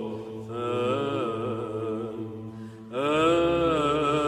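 Background chant: sung voices holding a slow, ornamented melodic line over a steady low drone, with a new, louder phrase starting about three seconds in.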